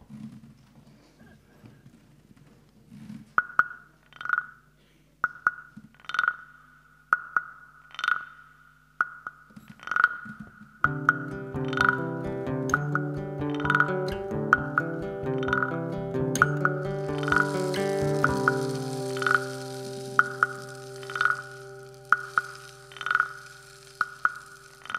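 A band opening a song: a steady knocking beat on wooden percussion, a click a little under a second apart, starts about three seconds in. About eleven seconds in, sustained chords join it, and later a high cymbal-like hiss.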